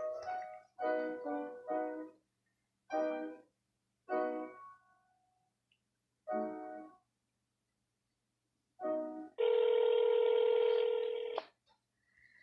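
Telephone call being transferred: a few short, separate musical notes come down the phone line, then a ringback tone sounds once for about two seconds, about nine and a half seconds in.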